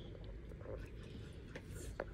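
Quiet room tone with a steady low hum, broken near the end by a brief faint rustle.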